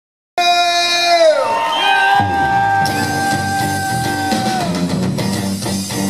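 Live blues band starting up: a long held note that bends downward, then the band comes in about two seconds in, with electric guitar over bass and drums.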